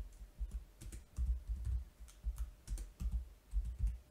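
Typing on a computer keyboard: irregular keystrokes, about three a second, each a dull thud with a faint click.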